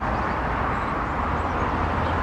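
Steady low rumble with a hiss above it, outdoor background noise that starts suddenly and holds even throughout.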